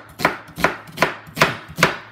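A dull kitchen knife chopping an onion straight onto a bare countertop with no cutting board: five slow, evenly spaced chops, about two and a half a second, each a loud knock of the blade on the counter.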